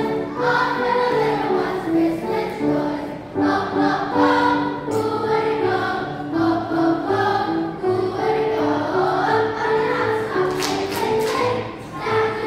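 Children's choir singing in unison with piano accompaniment, the voices holding long sung notes.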